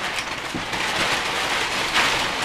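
Long strand of crumpled brown packing paper crinkling and rustling steadily as it is handled, a dense crunchy crackle.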